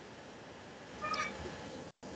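One short, high-pitched cry about a second in, over faint steady background hiss.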